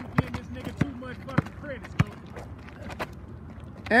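Basketball dribbled on an asphalt court: four sharp bounces about 0.6 s apart, then a few softer taps in the second half, with faint voices underneath.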